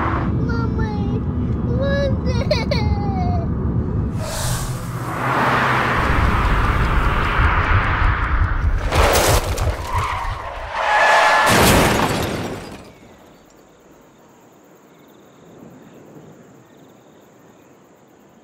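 A small child's voice inside a moving car over the engine's rumble, then tyres skidding, and a violent crash with heavy impacts and breaking glass about 9 and 12 seconds in. After the crash the sound drops away to a quiet background with a faint high steady tone.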